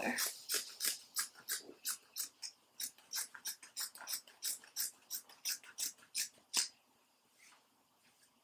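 Scissors snipping through cotton-linen sheet fabric in quick repeated cuts, about three snips a second, stopping about six and a half seconds in.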